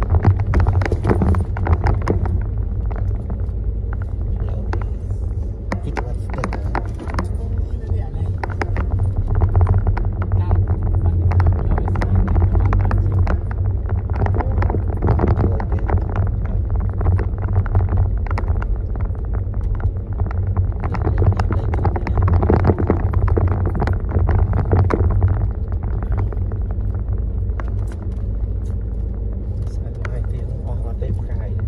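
A car's engine and road noise heard from inside the cabin: a steady low rumble while driving on an unpaved road.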